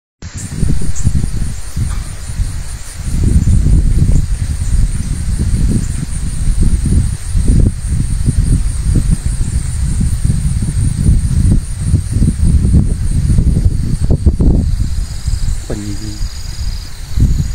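Loud, irregular low rumbling of wind buffeting the microphone, over an insect's high, steady, rapidly pulsing chirr.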